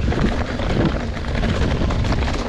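Mountain bike rolling down a dirt forest singletrack: wind buffeting the camera microphone over a steady rumble of knobby tyres on the trail, with many small clicks and rattles from the bike over stones and roots.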